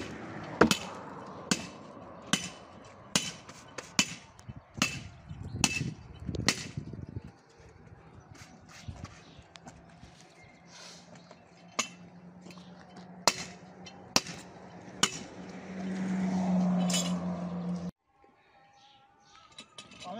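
Building work: a run of sharp knocks about once a second, then fewer, with a low steady hum joining partway through and growing louder before the sound cuts off suddenly near the end.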